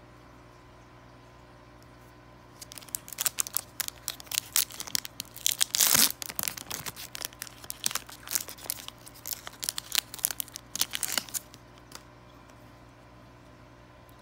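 Foil wrapper of a Yu-Gi-Oh! booster pack being torn open and crinkled by hand: a dense run of crackling that starts about three seconds in, is loudest around the middle, and stops a couple of seconds before the end.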